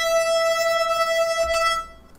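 Digidesign TurboSynth's synthesized output playing a single steady, held note rich in overtones, cutting off just before the end.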